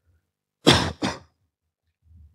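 A person clearing their throat: two short coughs in quick succession, about half a second apart, a little past the middle.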